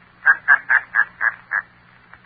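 A man laughing in a run of short, even pulses, about four a second, thin-sounding and stopping about a second and a half in.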